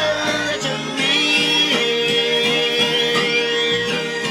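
Background music: a song with held, pitched notes, one long note sustained from a little under halfway through.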